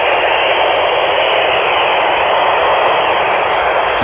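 FM handheld transceiver's speaker hissing steadily with the squelch open, static on the IO-86 satellite downlink with no voice coming through.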